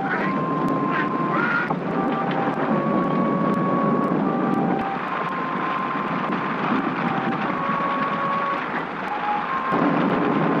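Heavy rain and wind of a storm, a dense steady rush, with a slow melody of long held notes over it.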